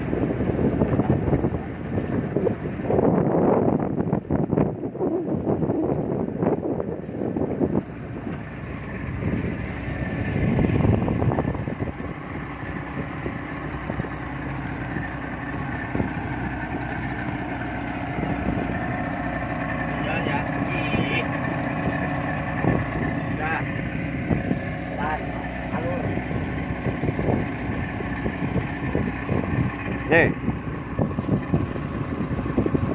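A 40-horsepower outboard motor running at steady cruising speed, with wind and water rushing past the fibreglass hull. For the first dozen seconds gusts of wind on the microphone and hull noise are loudest; after that the motor's steady hum stands out.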